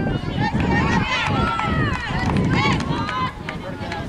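Several high-pitched voices shouting and calling at once across a girls' soccer field, overlapping throughout, over a steady low rumble.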